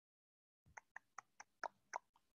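About six faint, quick computer mouse clicks, roughly four or five a second, starting about two-thirds of a second in.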